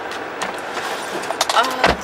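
Seatbelt handling inside a parked car: a few light clicks, then a dull knock near the end, as the belt is drawn across and buckled.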